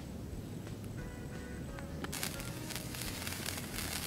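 Wood campfire crackling and popping. The sharp crackles start abruptly about halfway in, over faint music.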